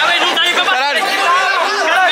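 A close crowd of teenagers talking and shouting over one another, many excited voices at once with no clear words.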